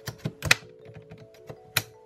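Sharp metallic clicks and taps of a saw blade being pushed and worked into the blade clamp of a Parkside PSSSA 20-Li A1 cordless jigsaw and sabre saw, a few irregular clicks with the loudest about half a second in and another near the end. The blade will not lock into the clamp.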